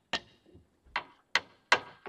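Sharp taps of a small handheld object on a tabletop, four in a row with the last three evenly spaced at a little over two a second: a makeshift beat standing in for a wooden fish to keep the rhythm of a chant.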